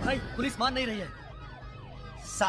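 A voice in the first second, then an emergency vehicle siren wailing quickly up and down in pitch, a few sweeps each second, fairly faint.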